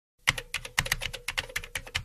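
Keyboard typing sound effect: a quick, irregular run of key clicks, about seven a second, marking text being typed out on screen.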